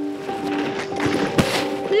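Background music with steady held tones, over which skis swish through fresh snow in a rush of noise that peaks about halfway through with one sharp crack. A man's whoop begins at the very end.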